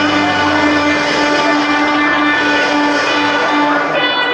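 A live country band holding one sustained chord, electric guitar and bass ringing steadily without a beat.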